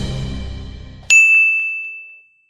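Audio logo sting: a dense swell of sound fading out, then a single bright chime about a second in that rings and dies away.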